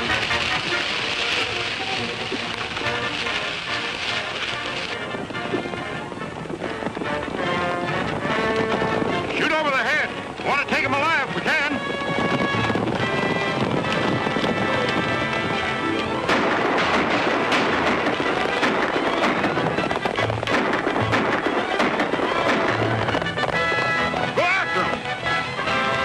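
Orchestral film score playing over the drumming of galloping horses' hooves.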